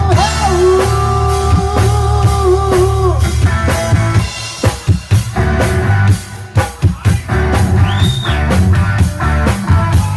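A live band playing, with electric guitar, bass and drum kit: a long held wavering note over bass and drums, then a drum fill of separate sharp hits about halfway through before the full band comes back in.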